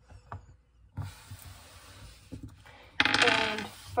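Small metal screws being handled in the fingers close to the microphone: a few faint clicks, then rustling handling noise, with a louder brushing noise about three seconds in.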